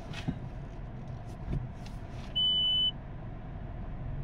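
A single short, steady high-pitched beep about two and a half seconds in, lasting about half a second, as reverse gear is selected and the reverse camera comes on. Under it, the low steady hum of the idling car heard from inside the cabin, with a few faint clicks.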